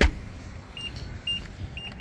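A 2024 Nissan Pathfinder's rear door shutting with a thud, followed by short high beeps roughly every half second: the power liftgate's warning tone as it is set to open.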